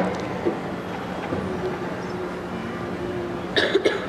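Steady murmur of a large congregation in a reverberant church during a silent pause, with a low steady hum underneath. A few short coughs come near the end.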